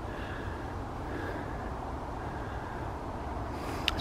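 Light wind on the microphone: a steady low rumble with no distinct event, and a brief click near the end.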